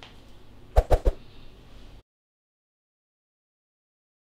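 Three quick knocks in a row about a second in, over a faint background, then the sound cuts off to dead silence.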